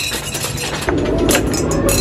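Plastic ring-toss rings raining down on rows of glass soda bottles: a scatter of quick clinks and clatters as they strike and bounce off the bottle tops.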